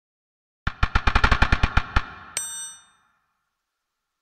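Logo intro sound effect: a quick run of about eleven sharp, pitched metallic strikes over a little more than a second, then a single bright ringing ding that dies away within about half a second.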